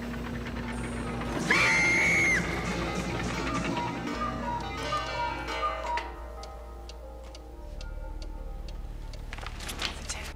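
Soundtrack music with a loud held high note early on, giving way in the second half to the steady ticking of a pendulum wall clock.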